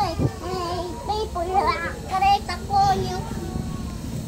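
A young girl singing a wavering tune with several held notes, in no clear words.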